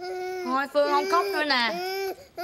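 A baby crying, a string of short, high wails that bend up and down in pitch.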